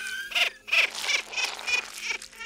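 A high-pitched cartoon character sound effect: a quick run of short squeaky calls, about three a second.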